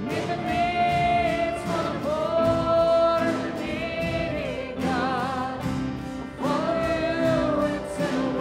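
A live contemporary worship band playing and singing: several voices hold long sung notes in phrases over acoustic guitar, bass, drums and keyboard, with a steady beat.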